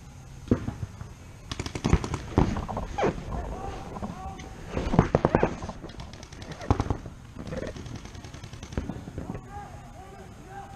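Paintball markers firing rapid strings of shots in repeated bursts, the densest about two and five seconds in.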